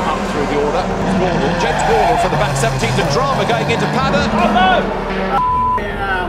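Touring car engines running at racing speed, mixed with indistinct voices. Near the end there is a short, steady high beep.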